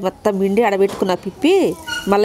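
A woman talking, with one short call about one and a half seconds in that rises and then falls in pitch.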